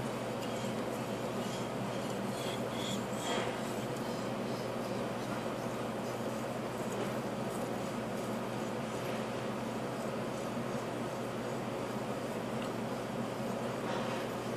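Steel knife blade being worked back and forth on a whetstone during sharpening, a soft repeated scraping, over a steady mechanical hum.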